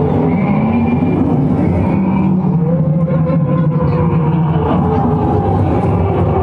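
Loud, dense crowd din: many voices over a steady low rumble, with wavering shouts or calls rising and falling above it.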